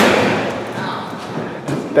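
A single loud thump at the start, echoing on for about a second in the large hard-walled hall of a church.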